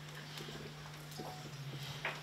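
Hushed crowded room: a steady low hum with a few faint clicks and small shuffling noises from people.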